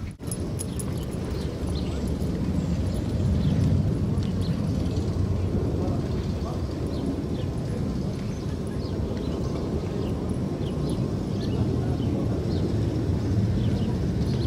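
Wind buffeting the microphone outdoors: a steady low rumble, with faint short high chirps scattered through it.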